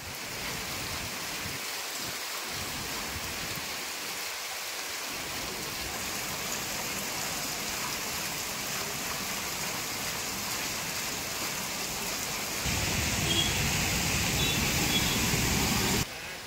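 Heavy rain falling steadily, an even hiss of rain on wet surfaces. About thirteen seconds in it suddenly grows louder and fuller.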